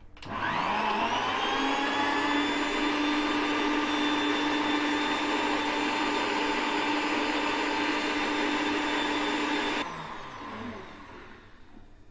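Electric mixer grinder (mixie) grinding shredded coconut with water: the motor starts with a rising whine, runs steadily for about ten seconds, then is switched off and winds down.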